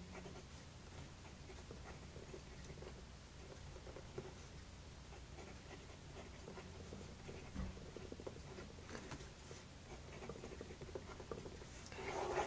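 Lamy 2000 fountain pen's gold nib moving over paper as block letters are written: faint, short strokes one after another, with the slight feedback this nib gives.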